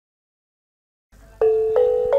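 Silence for about the first second, then a tuned-percussion part starts: two struck, ringing notes, the second about a third of a second after the first.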